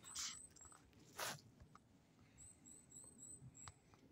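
Near silence: faint room tone in a pause of the reading, with two brief soft hisses near the start and about a second in, a few faint clicks, and a faint run of short, very high chirps in the second half.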